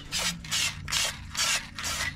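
An aerosol spray paint can being shaken, its mixing ball rattling in short even bursts about twice a second.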